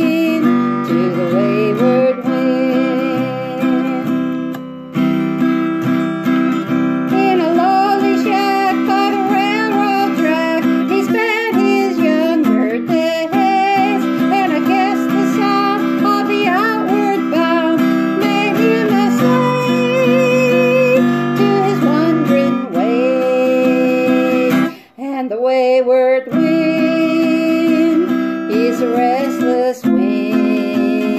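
A woman singing to her own strummed acoustic guitar. The strumming and singing stop briefly near the end, then pick up again.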